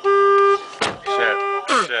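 Electric vehicle horn beeping twice, each a steady tone about half a second long, with a sharp click between the beeps. It sounds from the handlebar controls as the rider hunts for the light switch.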